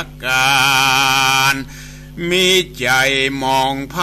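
A voice chanting a Buddhist verse story in Northern Thai in a slow, melodic recitation. It holds one long wavering note for over a second, pauses briefly, then sings on with more drawn-out syllables, over a steady low hum.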